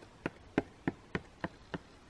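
A series of evenly spaced light clicks, about three a second.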